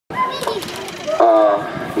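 People's voices, with one loud, drawn-out call about a second in and a few clicks before it.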